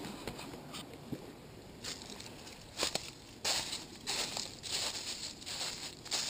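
Footsteps crunching on gravel and dry fallen leaves, irregular at first and then coming steadily in the second half.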